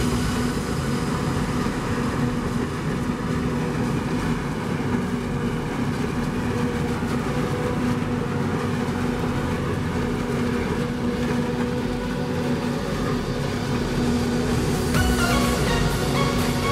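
Self-propelled forage harvester chopping standing maize for silage, with a tractor and silage trailer running alongside: a steady machine drone with a constant hum. Music comes in about a second before the end.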